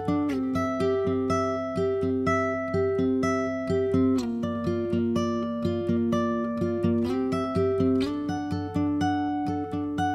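Instrumental song intro on a plucked acoustic string instrument, guitar-like, picking a run of notes several times a second. There are no vocals.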